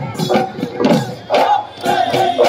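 Live Bihu folk music: drum beats about twice a second under loud group shouts and singing voices.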